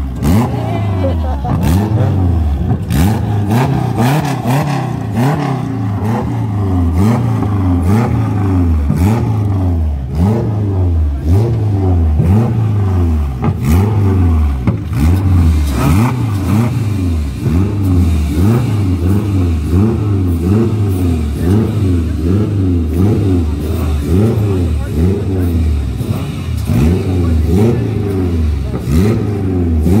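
Supercharged Honda K-series four-cylinder engine in a Civic sedan, revved over and over in quick throttle blips, the revs climbing and dropping about once or twice a second.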